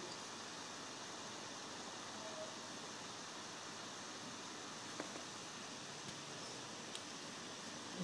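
Faint steady hiss of microphone and room background noise, with three faint short clicks about five, six and seven seconds in, typical of computer mouse clicks.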